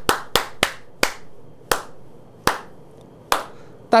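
One man clapping his hands, about seven single claps that slow down and spread apart, the last coming about three seconds in.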